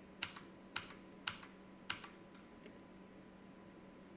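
Faint, sharp clicks of computer controls, about one every half second: four in the first two seconds, then a fainter one. They step a chart replay forward bar by bar.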